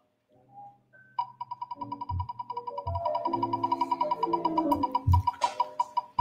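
On-screen prize-wheel spinner sound effect: a fast run of high ticks starting about a second in, which slow as the wheel winds down, over light background music with a few drum beats.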